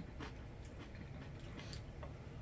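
Faint, irregular crunches of a tortilla chip being chewed with the mouth closed, a handful of soft crackles spread across the moment.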